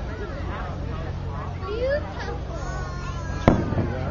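A single sharp firework bang about three and a half seconds in, over the chatter of a street crowd.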